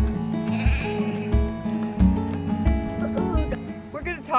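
Background music with a steady beat, and a sheep bleating once about half a second in.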